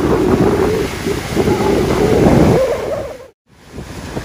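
Strong waves washing over shoreline rocks, with wind buffeting the microphone. The sound cuts out briefly a little after three seconds in and resumes as quieter surf and wind.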